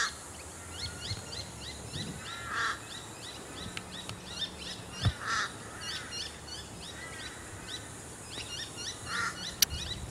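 Birds calling throughout: many short, high, rising chirps repeating several times a second, with a few lower, harsher calls mixed in. A single sharp crack about five seconds in, a golf shot struck out on the fairway.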